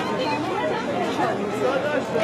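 Crowd chatter: many people talking over one another in a street.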